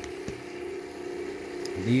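Homemade pulse motor running steadily, its clear resin rotor spinning on its shaft bearings between the drive coils, giving a steady hum with a faint tick about a quarter second in.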